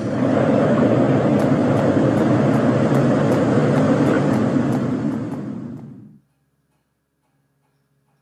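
Blizzard wind sound effect: a loud, steady rush of wind that fades out about six seconds in.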